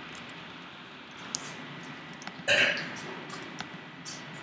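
A few light clicks from a computer keyboard and mouse as a short word is typed and a dialog button is clicked. About two and a half seconds in there is one short, louder vocal sound from the room.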